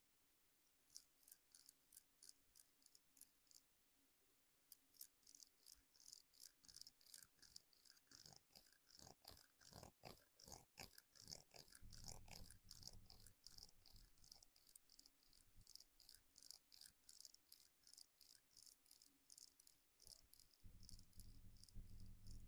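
A fine comb tool scraping through hair at the nape of the neck and over the scalp in quick, short strokes, several a second, faint and crisp. A soft low rumble of handling comes twice, in the middle and near the end.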